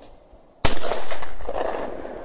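A single shotgun shot about two-thirds of a second in, its report echoing and fading away over the next second or so.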